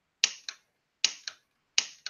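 A firearm being dry-fired, its trigger pulled over and over on an empty gun: three pairs of sharp mechanical clicks, each pair about a quarter second apart.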